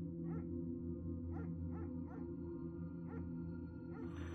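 Quiet background music, a steady low drone, with six short yip-like sounds scattered through it at uneven intervals.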